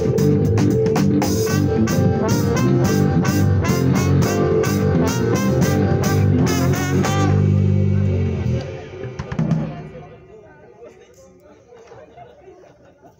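A live wedding band of trumpet, trombone, violin, keyboard and drum kit plays the close of a song, with regular cymbal strokes. About seven seconds in, the band holds a final low chord, and the music stops at about ten seconds, leaving only a faint background.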